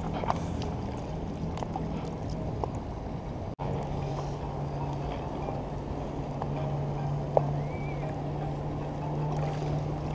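Water lapping and sloshing close by, with a steady low motor hum underneath and a few small clicks.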